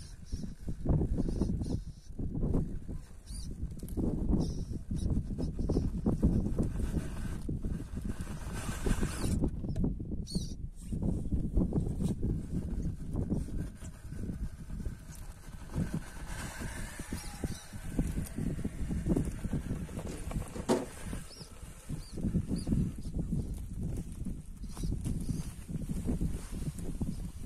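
Wind buffeting the microphone in uneven gusts, a low rumble that swells and fades.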